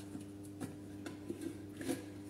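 A few faint, short clicks and rubs as the lid of a white enamel storage mug is handled and eased open, over a steady low hum.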